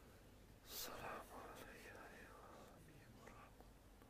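Near silence with faint whispering: a soft hissing 's' just before a second in, then a barely audible murmur. This is worshippers reciting under their breath during the silent part of the prayer.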